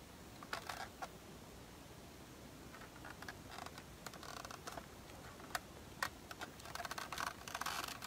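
Quiet room with faint, scattered small clicks and light rustles; a couple of sharper ticks come in the second half.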